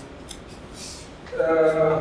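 A man talking through a handheld microphone in a lecture room pauses, with a couple of short, faint hissing sounds like breaths or rustles, and then resumes speaking about a second and a half in.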